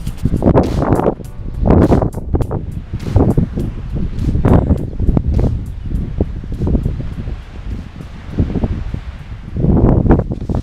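Wind buffeting an action camera's microphone in uneven gusts, a heavy low-pitched blustering with occasional crackles.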